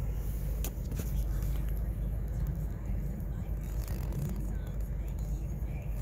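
A car's steady low running rumble heard from inside the cabin, with a few faint clicks in the first second.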